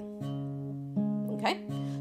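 Capoed Crafter acoustic guitar, the thumb plucking single bass notes that alternate between the sixth and fourth strings of a G-shape chord, three sustained notes ringing into each other about three-quarters of a second apart.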